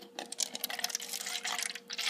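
Red drink poured from a container into a plastic cup already holding some liquid, the stream splashing and trickling in. The pour starts a moment in.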